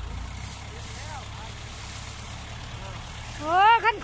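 Truck engine idling: a steady low rumble. Faint distant voices are heard early on, and a voice speaking in Thai starts near the end.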